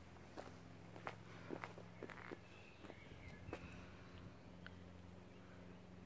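Faint footsteps on gravelly ground, a loose scatter of soft crunches, over a low steady hum; the steps thin out after about four seconds.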